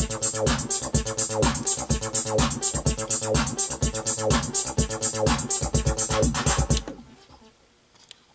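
303-style monophonic synth bass line sequenced by a MIDIbox Sequencer V4 on an Ambika synthesizer, looping in a steady rhythm over drums with regular kicks and hi-hat ticks. The pattern cuts off about seven seconds in.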